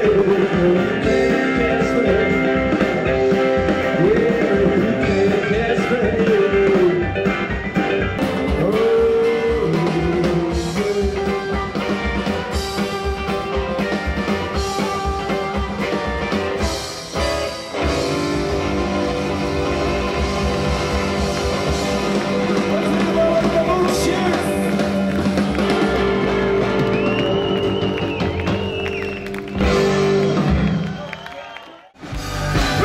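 Live rock-and-roll band playing on stage: a singer over acoustic and electric guitars, piano, upright bass and drums. The singing fills roughly the first ten seconds, after which the band plays on.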